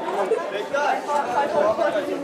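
Crowd chatter: several people talking at once, with no single voice clear.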